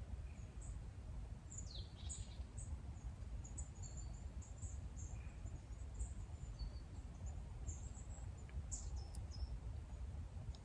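Small birds calling in woodland: scattered short, high chirps throughout and one falling whistle about two seconds in, over a low steady rumble.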